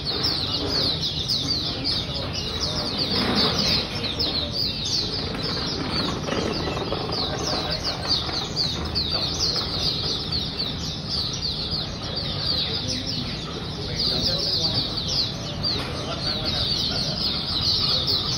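Caged white-eyes (mata puteh) singing: a dense, fast, unbroken stream of high, quick chirps and twitters.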